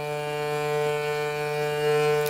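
Hurdy-gurdy string sounded by the cranked wooden wheel: one steady, unbroken low note, without any buzzing.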